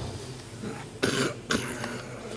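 Someone close to the microphone coughing twice: a longer cough about a second in and a short one half a second later.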